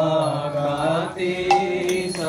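Voices chanting a devotional mantra in a sung melody over a steady low held tone, with a new note entering sharply about a second and a half in.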